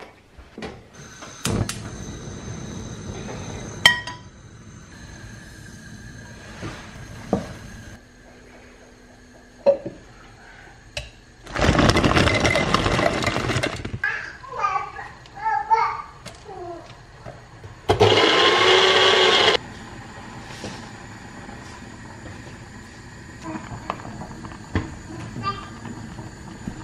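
Electric blender run in two bursts, about two and a half seconds and then about a second and a half, blending berries and banana. A brief voice-like call comes in the pause between the bursts.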